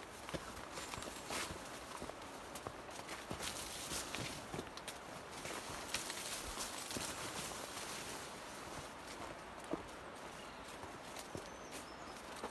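A hiker's footsteps on a dirt trail through dense overgrown brush, with a steady rustle of leaves and ferns brushing past him and irregular soft clicks and taps.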